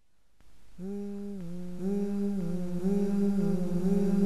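A voice humming a slow, low melody in long held notes that glide smoothly from one pitch to the next, starting about a second in out of near silence and growing louder.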